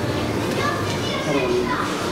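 Indistinct background chatter of several voices, children's voices among them, with no single word standing out.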